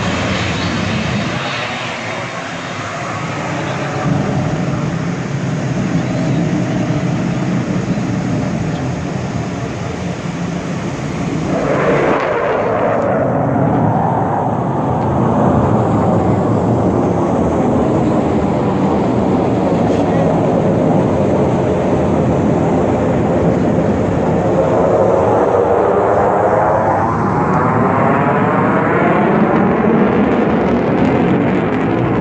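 Jet noise from USAF Thunderbirds F-16 Fighting Falcons flying a display: a loud, continuous rumble that swells sharply about twelve seconds in. It grows louder again in the second half, with a sweeping, phasing whoosh as a jet passes.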